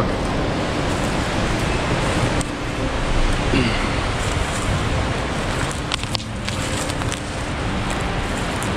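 Steady rushing of river water running through the rocky Norden Chute on the Niobrara River, with a few soft crackles about three-quarters of the way through.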